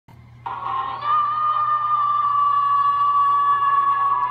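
A single high note held at a steady pitch for over three seconds, starting about half a second in, played back through a computer's speakers over a faint low hum.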